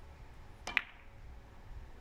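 Cue tip striking the cue ball in a three-cushion carom shot: one sharp click about three-quarters of a second in, with a second click of ball on ball just after it.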